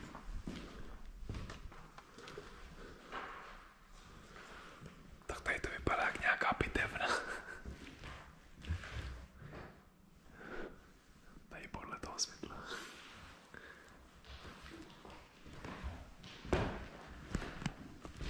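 Quiet whispering and footsteps on a debris-covered floor in an empty room, with short knocks and scuffs throughout. A louder stretch of whispering or rustle comes about five to eight seconds in.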